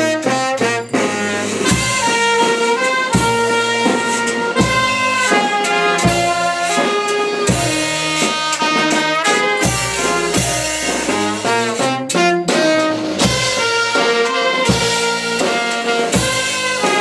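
Live street brass band playing a lively tune: trumpets and saxophone carry the melody over steady bass-drum beats and a low brass horn.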